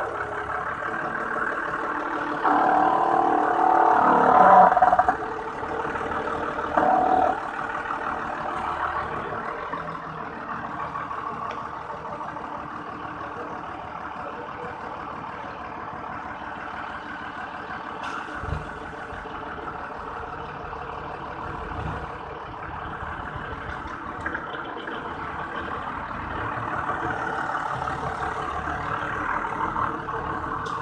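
TCM forklift's engine running steadily under load while handling a stack of steel plates. It revs up between about two and five seconds in and briefly again near seven seconds, with a couple of dull thumps around the middle.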